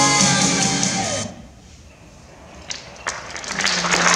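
A recorded pop song ends about a second in. After a short lull, a few scattered claps come, and then audience applause builds toward the end.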